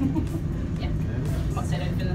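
Tower lift running as it climbs, a steady low rumble, with faint voices over it.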